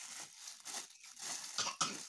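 Clear plastic wrapping crinkling as a microphone is handled in its bag, with a short cough near the end.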